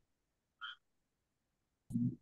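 Mostly quiet audio on a video-call line, with a short faint blip about two-thirds of a second in. Near the end a sudden, low, muffled sound comes through the line from a participant's connection.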